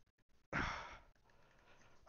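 A single sigh: one short breath out into a close headset microphone about half a second in, fading away over half a second.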